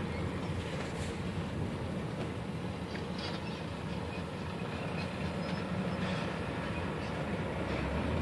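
Steady low rumble of road traffic and the car's own running, heard from inside the cabin, with heavy lorries passing close alongside.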